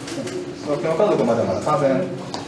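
Speech only: a low voice talking, not picked up as words by the recogniser.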